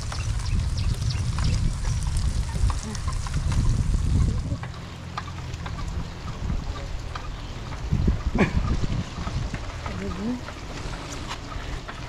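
Wind rumbling on the microphone of a camera carried on a moving bicycle, with the hiss of tyres on a wet road; the wind drops about four seconds in. A few short vocal sounds come near the end.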